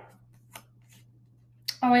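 Tarot cards being handled as they are drawn from the deck: a sharp snap of card stock fading at the start and a faint tick about half a second in. A woman's voice comes in near the end.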